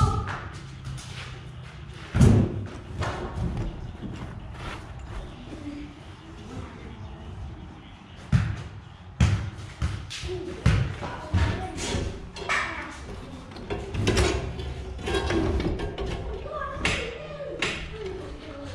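Irregular metal clanks, knocks and thumps of new roller chain being handled and worked around the floor of a New Holland 795 manure spreader, the loudest knock about two seconds in.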